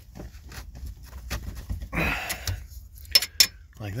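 A metal bracket in the dash being bent back and forth by hand until it fatigues and breaks off. Small metallic clicks and a short rasping burst about two seconds in lead up to two sharp clicks just after three seconds.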